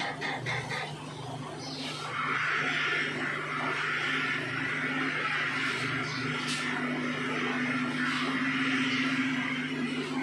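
Barber's scissors snipping hair in quick clicks, about five a second, during the first second. This gives way to a steady hiss over a low electrical hum.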